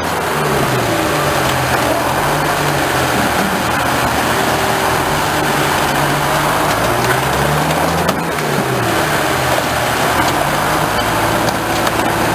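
Car crusher working: its engine and hydraulics run loud and steady under load, the engine note rising and falling again and again as the press plate bears down on the car bodies.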